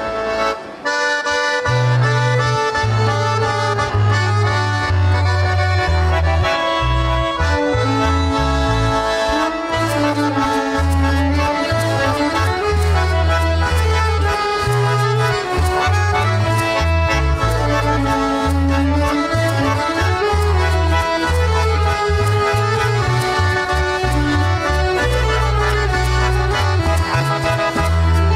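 Accordion playing traditional folk dance music over a moving bass line, starting in full about a second in after a brief dip.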